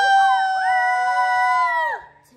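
Several children holding one long, high sung note together at the end of a song, stopping abruptly at about two seconds.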